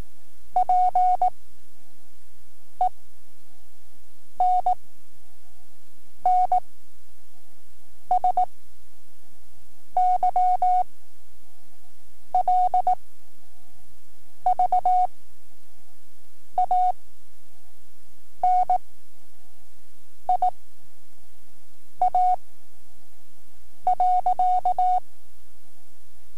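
Morse code practice sent as a single-pitch audio tone from a cassette: each character is keyed quickly as a short cluster of dots and dashes, with long gaps of about two seconds between characters. This is slow-word-speed code for the five-word-per-minute novice test, with a faint hum under it.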